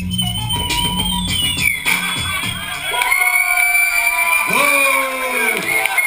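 Live hip hop DJ music: a bass-heavy beat that drops out about halfway through, leaving thinner music with sliding, falling-pitch voice-like calls over it.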